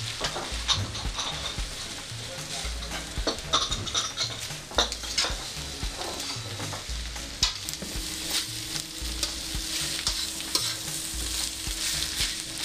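Vegetables sizzling in a wok over a gas burner as they are stir-fried, the spatula scraping and clicking against the pan again and again. A low steady hum joins in past the halfway point.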